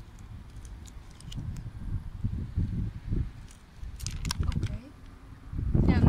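Wind rumbling on the microphone, with a few short crinkles of a plastic candy wrapper about four seconds in.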